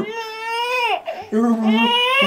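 Baby squealing happily: a long high-pitched squeal through about the first second, then a lower steady held voice, and a second squeal beginning near the end.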